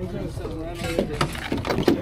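People talking indistinctly, with a few knocks and clatter near the middle and end, over a steady low rumble.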